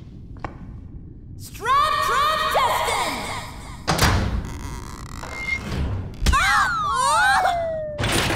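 Animated-cartoon sound effects: a burst of warbling, chirping creature-like calls, then two heavy thumps about two seconds apart, and a long falling whistle near the end.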